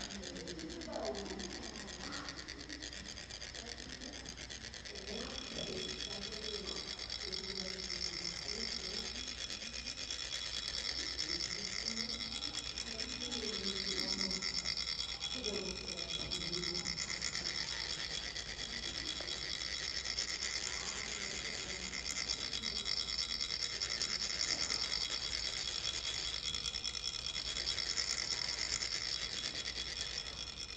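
Several metal chak-pur funnels being rasped with metal rods to trickle coloured sand onto a Tibetan sand mandala: a steady, high-pitched scratchy grating with a ringing edge. Low voices can be heard under it through the first half.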